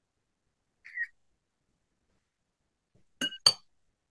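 A short faint chirp about a second in, then two quick, sharp clinks about a quarter second apart, each with a brief ring.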